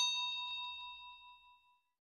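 A single bell 'ding' sound effect for a subscribe animation's notification bell: struck once, then ringing out with a clear steady tone that fades away over about a second and a half.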